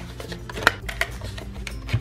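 Handheld single-hole paper punch clicking as it punches holes through cardstock: a few short sharp clicks, the loudest about two-thirds of a second in, over soft background music.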